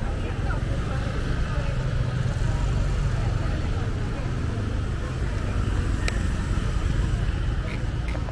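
Busy street ambience: steady road traffic rumble with background voices, and one sharp click about six seconds in.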